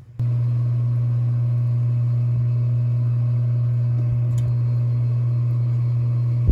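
Steady, loud low electrical hum with a buzzing edge, like an appliance motor running, unchanging throughout, with one faint click about four and a half seconds in.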